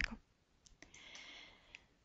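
Near quiet with a few faint, sharp clicks, two close together a little over half a second in and one more near the end, over low hiss.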